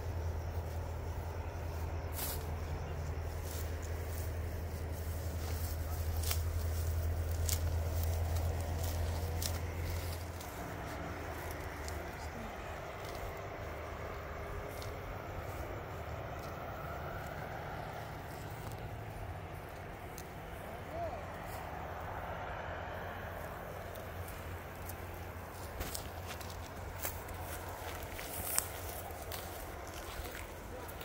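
Outdoor rural ambience with faint distant voices. A steady low rumble runs for about the first ten seconds, then drops away, and scattered light clicks and rustles come through the whole stretch.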